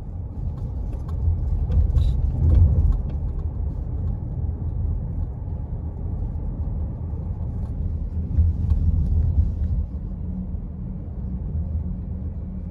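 A car driving along a city street: a steady low rumble of road and engine noise, swelling a little twice, with a few faint clicks and rattles.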